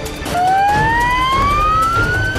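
News intro jingle: a synthesized tone that comes in about a third of a second in and climbs steadily in pitch for about two seconds, over a low rumbling bed.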